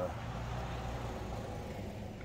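Low, steady rumble of a motor vehicle engine running in the background.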